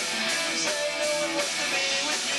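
Live punk band playing, with electric guitars and drums, recorded thin with little low end.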